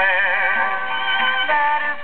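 1940s country-western recording played from a 78 rpm shellac record: a lead melody wavering with a strong vibrato, settling onto held notes about a second and a half in, with no words sung. The sound is thin, with nothing above the upper midrange.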